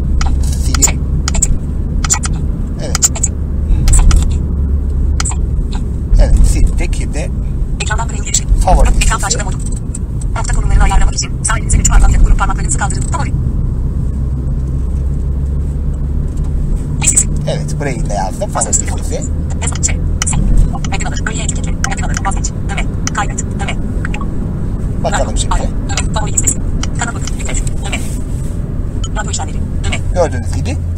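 iPhone VoiceOver screen reader speaking in short bursts, mixed with quick taps and clicks, over a steady low hum.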